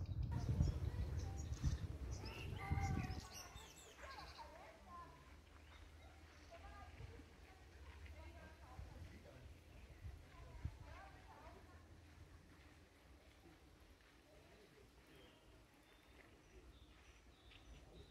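Faint, indistinct people's voices, with a low rumble on the microphone that is loudest in the first three seconds and then drops away, leaving quieter scattered voice fragments.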